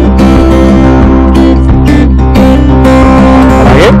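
Background music led by strummed guitar, with a steady beat.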